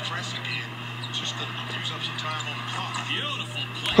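Basketball game broadcast playing quietly in the background: a TV commentator talking, over a steady low hum.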